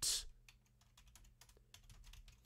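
Faint typing on a computer keyboard: a string of separate, unevenly spaced key clicks as a shell command is entered, after a short hiss right at the start.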